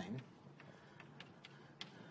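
Chalk writing on a blackboard: a handful of faint, irregular clicks and taps as the chalk strikes the board.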